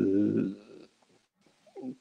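A man's drawn-out hesitation sound, a held 'yyy', fading out about half a second in, followed by silence and a short voiced sound just before he speaks again.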